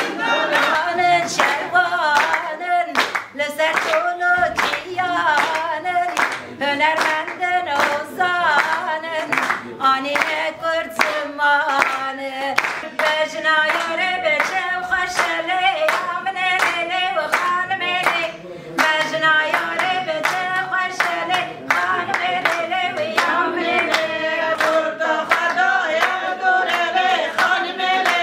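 A group of women singing together in unison while clapping their hands in a steady rhythm.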